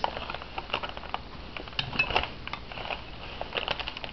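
Light, irregular clicks and taps of broken gumball-machine pieces being handled and set down on a tabletop.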